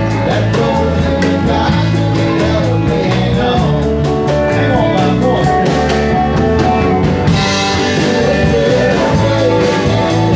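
Live band playing a country-rock song, with electric and acoustic guitars and a singer; the sound turns brighter about seven seconds in.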